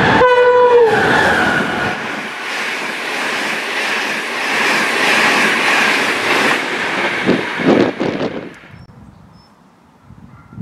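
Irish Rail diesel railcar sounding its horn as it runs through the station at speed. The horn note sags slightly in pitch as the train reaches the camera, followed by the loud, steady rush of the passing train. A few knocks of wheels over rail joints come near the end, and the sound drops away sharply about eight and a half seconds in.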